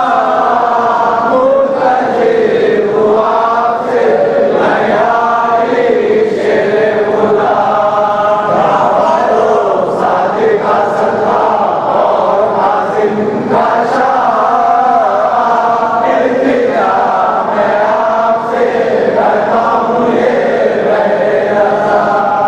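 Male voices chanting a munajat, a Shia devotional supplication, in a continuous sung melody with no pauses.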